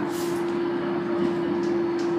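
Running noise of a moving train heard inside its toilet cubicle: a steady rumble with one constant hum.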